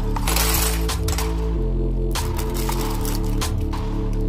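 Small plastic Lego bricks rattle and clatter as they are poured from a plastic bag into a plastic tub, densest in the first second, with a few scattered clicks after. Background music with a low, shifting bass line plays throughout.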